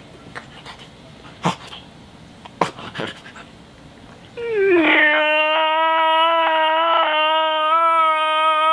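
A few soft clicks over a low hiss, then about four and a half seconds in a loud, clear held note that slides down in pitch and holds steady, with a slight waver.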